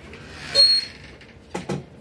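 Movement noise close to a studio microphone: a short, high-pitched squeak about half a second in, then two quick knocks near the end.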